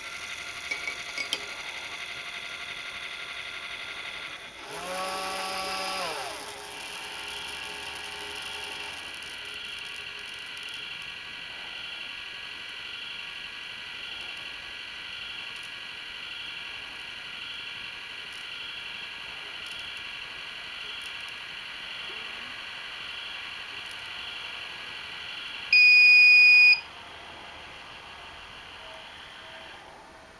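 RCBS ChargeMaster 1500 and Pact electronic powder dispensers running side by side, their motors whining steadily as they turn the drop tubes and trickle powder onto the scales. The whine gets louder and shifts in pitch about five seconds in. Near the end a loud electronic beep about a second long signals that a charge is complete.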